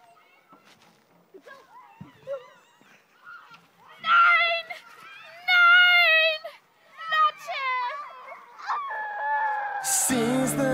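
A girl's high-pitched squeals and shrieks during playful wrestling in the snow: after a few quiet seconds with faint voices, four or five loud, drawn-out cries with wavering pitch come in quick succession.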